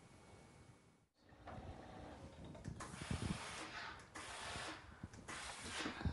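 Faint rustling and rubbing as fabric is handled, in a few uneven swells, with a brief silent dropout about a second in.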